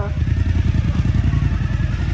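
Suzuki V-Strom motorcycle engine running at low revs, a steady rumble, as the loaded bike creeps forward at walking pace.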